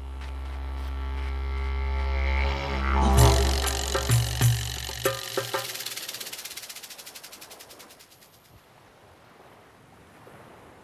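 Cartoon soundtrack sound effects: a low droning note swells and cuts off about five seconds in. A crash lands about three seconds in, followed by a few thuds and a rapid rattle that fades away.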